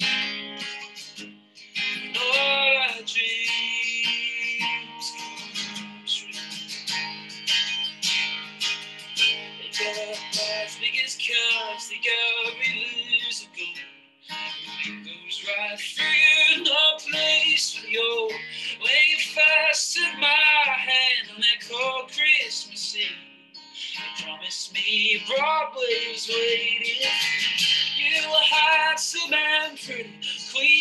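Solo acoustic guitar strummed under a sung melody, a single voice singing phrase after phrase of a slow song, with a short break between lines about fourteen and twenty-three seconds in.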